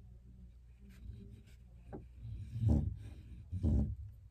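Oil pastel being drawn across construction paper in short strokes, with two louder scraping strokes near the end.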